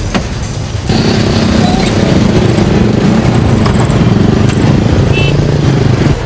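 Motorcycle engine running close by in street traffic, starting loud and abruptly about a second in and then holding a steady low note.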